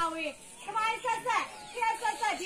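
Several high-pitched voices talking, overlapping one another.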